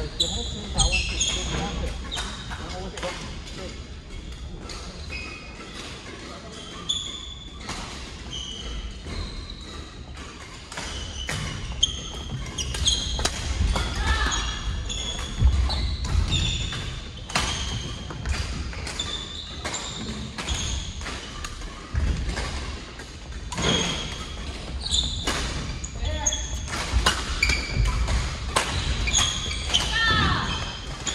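Badminton doubles play on a wooden court in a large echoing hall: sharp racket strikes on the shuttlecock, sneakers squeaking on the floor and footfalls, fewer in the first third and coming thick and fast from about twelve seconds on.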